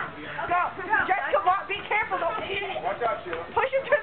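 Several voices, children's among them, talking and calling out over one another, no words clear.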